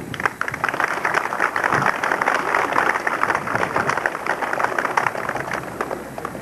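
An outdoor crowd applauding with dense, steady clapping that thins out toward the end.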